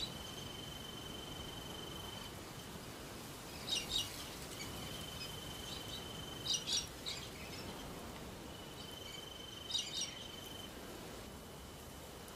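Quiet bushland ambience: a thin, steady high trill in spells of about two seconds, with short bursts of bird chirps three times, about three seconds apart.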